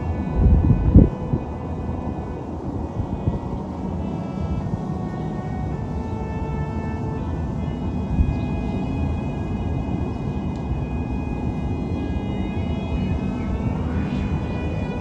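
Distant aircraft engine droning: a thin whine of several steady high tones that drift slowly, over a low outdoor rumble. A few low thumps of wind or handling hit the microphone in the first second.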